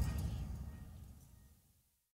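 The closing tail of an electronic dance-pop track: its last low bass notes die away, fading out to silence a little over a second in.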